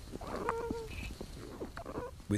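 Platypus sounds picked up by a microphone inside the nesting burrow: faint scuffling and clicks, with one short call of steady pitch about half a second in.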